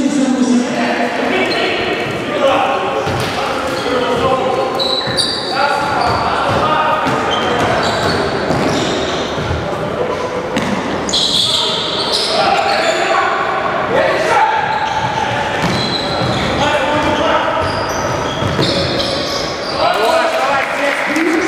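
Basketball game sounds in a large, echoing gym hall: the ball bouncing on the wooden court amid players' and spectators' indistinct voices.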